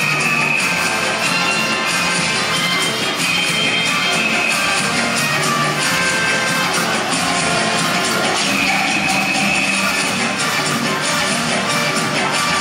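Saya dance music playing over a sound system at a steady loudness, with long held high notes over a full accompaniment.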